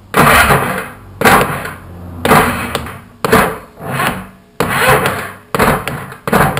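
Polaris 250cc two-stroke ATV engine being turned over by hand in six short strokes, about one a second, to bring the piston back in line with the intake port.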